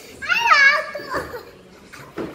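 A young child's short, high-pitched wordless vocal cry with a wavering pitch, about a quarter second in, followed by a few softer voice sounds.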